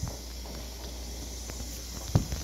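A phone being handled while it films: a light click at the start and another faint one about one and a half seconds in, over a low steady hum of room noise.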